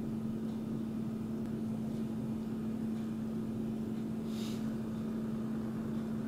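A steady low hum, one unwavering tone, in a quiet room, with a brief soft hiss about four seconds in.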